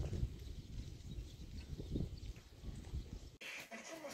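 Outdoor wind buffeting the microphone: an irregular low rumble with uneven gusty bumps. It cuts off suddenly near the end, leaving quiet room tone.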